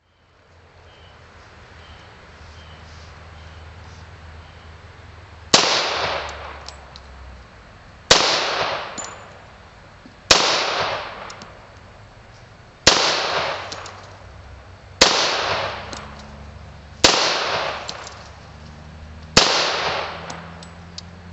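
Ballester Molina .45 ACP semi-automatic pistol fired seven times in slow, evenly spaced shots about two seconds apart. Each shot rings out with an echo that dies away before the next.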